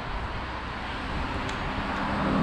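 Road traffic noise along a beachfront avenue, with wind rumbling on the microphone; it grows a little louder near the end.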